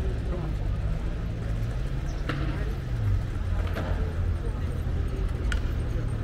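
City square street ambience: a steady low rumble with faint voices of passers-by and three sharp clicks in the second half.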